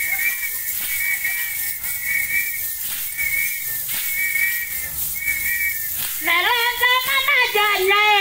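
A dance whistle blown in long, steady blasts with short breaks between them; from about six seconds in, women's voices join in singing a Kamba song.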